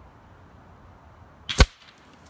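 A single sharp shot from a Rapid Air Weapons .30-calibre PCP air rifle about one and a half seconds in, a brief crack with a smaller click just before it.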